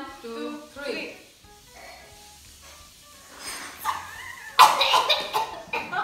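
Girls laughing loudly and coughing. The laughter breaks out about four and a half seconds in, after quieter voices.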